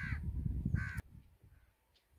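A crow cawing twice, about a second apart, over a low rumble that cuts off suddenly halfway through.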